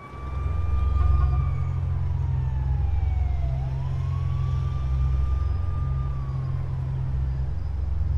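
A siren wailing slowly, its pitch falling for about three seconds and then rising again, over a steady low rumble.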